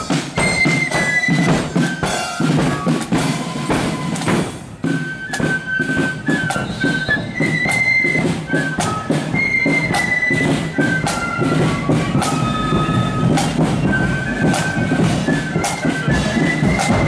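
Marching flute band playing a melody on flutes over snare and bass drums in a steady march beat.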